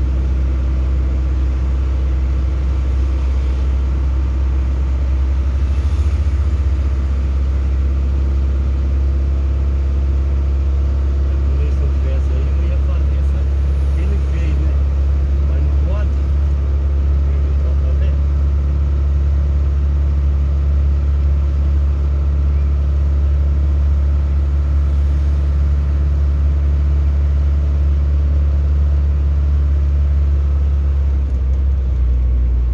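A car driving at steady speed: a constant low engine and road drone with no marked revving.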